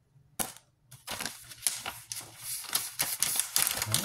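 Stiff paper picture cards being handled close to the microphone: a quick run of sharp clicks, taps and rustles, starting about half a second in and growing busier toward the end.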